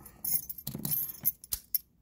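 Keys jingling and clinking against a Yale Y90S/45 padlock as it is picked up and handled, a few light metallic chinks with a sharper click about three-quarters of the way through.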